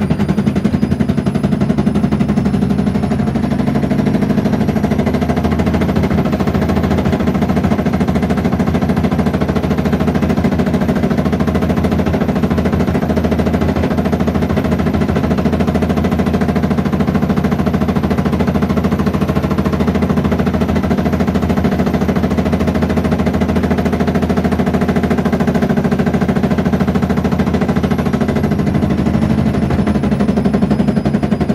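Bush Rapid 15 washing machine on its final spin, the drum turning fast with a continuous rapid rattle and a faint high motor whine that climbs a little in the first few seconds and drops near the end.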